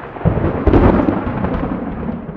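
A deep rumbling boom that starts about a quarter second in, is loudest at around a second, and slowly dies away.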